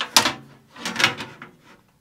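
A 420 mm radiator being fitted into the metal roof mount of a PC case: a sharp clack just after the start as it meets the frame, then a softer rattle about a second in as it settles into place.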